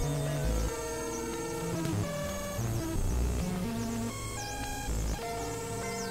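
Experimental electronic synthesizer music: a dissonant jumble of held synth tones that jump to new pitches every fraction of a second over deep bass notes, with quick dipping whistle-like sweeps high above.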